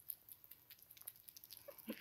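Faint, scattered little clicks and ticks from a sugar glider eating and moving about in a plastic hide.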